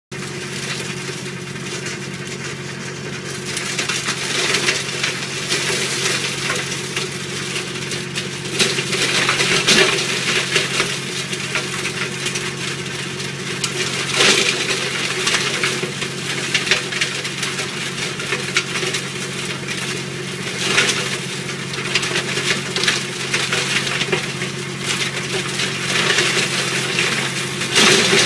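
AGR Leopar 10 mulcher-shredder, driven by a tractor's engine, shredding pruned orchard branches: the engine runs steadily under load beneath a continuous crackling and crunching of wood. The crunching swells into several louder surges as thicker branches go in.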